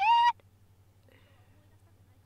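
A brief, high-pitched vocal squeal from a person, sliding in pitch and cut off about a third of a second in; then near silence with a faint low hum.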